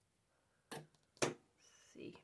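Small paper jigsaw pieces being handled and pressed onto card on a tabletop: two short taps or rustles about a second apart, the second louder. Near the end comes a brief thin high squeak.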